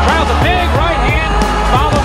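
Background music with a steady low bass and a voice-like melodic line.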